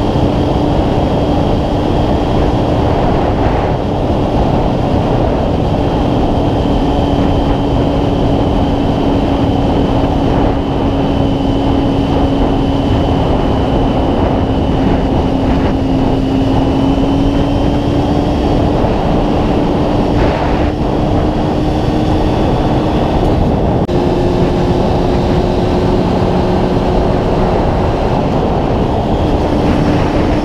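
Honda CB600F Hornet's inline-four engine running at a steady road speed, with heavy wind rush on the bike-mounted camera microphone. The engine note drifts slowly, then steps up in pitch about four-fifths of the way through.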